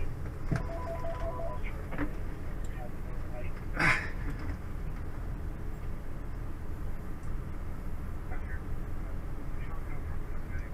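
Steady low rumble of a patrol vehicle heard from inside its rear caged compartment, with about a second of electronic beeping near the start and a short burst of noise about four seconds in.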